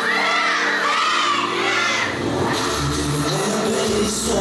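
An audience shrieking and cheering over a K-pop dance track. The high screams are densest in the first half, and about two and a half seconds in the song's bass and beat come in.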